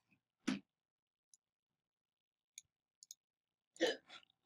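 A few faint, sharp clicks of a computer mouse, scattered over the few seconds, with two short louder bursts, one about half a second in and one near the end.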